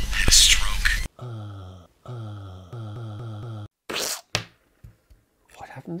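A hand-turned paper record in a greeting card plays a scratchy, hissy voice through its needle. About a second in, this cuts off abruptly. A short pitched voice snippet follows, repeated several times in a stutter, then a brief noisy burst and a click.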